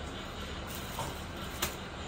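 Fabric and a cellophane-wrapped packet being handled on a table: a soft rustle about a second in and a sharper crinkle or tap at about one and a half seconds, over a steady low background hum.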